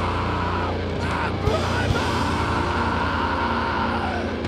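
Live rock band playing loud: distorted electric guitars and bass guitar over drums, with a steady droning held chord through the second half.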